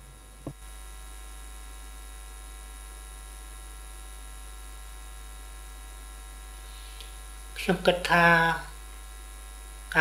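Steady electrical mains hum on the audio line, a stack of even tones that comes in suddenly just after a short click about half a second in. A man's voice speaks briefly near the end.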